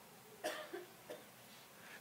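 A faint, short cough about half a second in, followed by a softer little sound about a second in.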